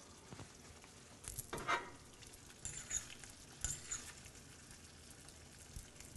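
Tomato sauce simmering faintly in a saucepan with two pieces of halibut poaching in it, with a few soft pops and spatters.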